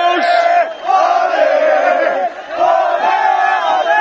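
A group of men chanting together in loud, repeated phrases of about a second and a half each, with short breaks between them: a victory celebration chant by the players and staff.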